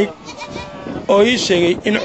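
Bleating from a herd of small livestock: quieter calls at first, then one loud quavering bleat from about a second in to near the end.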